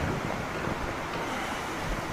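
Steady hiss of background noise with no distinct events.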